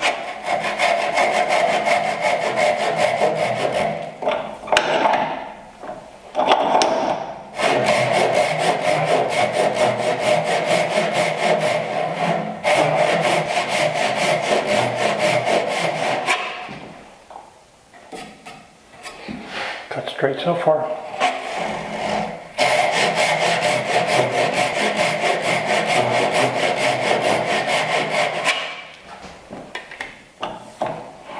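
Japanese Ryoba pull saw cutting down the cheek of a half-lap joint with its rip-tooth edge, in runs of quick, even strokes. There are brief stops and a longer pause of a few seconds past the middle.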